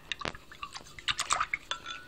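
A pencil stirring red-dyed water in a glass measuring cup, tapping and clinking against the glass in quick, irregular clicks, busiest about a second in.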